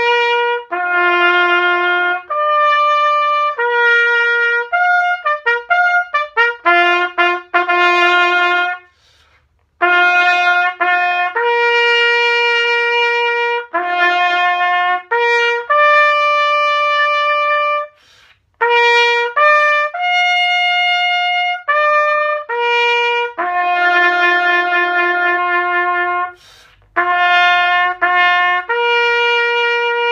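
A brass prototype bugle with a trumpet-style bell played open, with no hand over the bell: a bugle call of held notes, with a run of quick tongued notes about five to nine seconds in and short pauses about nine, eighteen and twenty-six seconds in.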